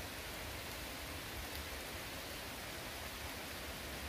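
Steady hiss of light rain falling on forest foliage, with a low rumble underneath.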